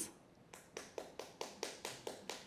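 Faint hand clapping, quick even claps at about six a second, starting about half a second in.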